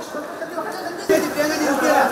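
Chatter of several people talking over one another, louder from about a second in.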